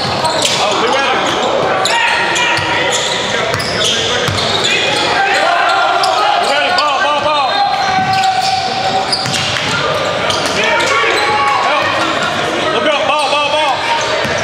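Basketball game sounds in a large echoing gym: the ball dribbling on the hardwood floor, sneakers squeaking with sharp chirps near the middle and near the end, and players and spectators calling out indistinctly.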